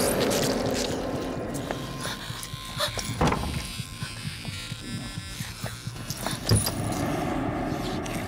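Dramatic film soundtrack music laid under a fight, with two heavy sound-effect hits, about three seconds in and about six and a half seconds in; the second is the louder.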